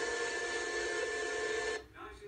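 Upright vacuum cleaner running with a steady hum and hiss, played back through a laptop's speakers; it cuts off abruptly near the end.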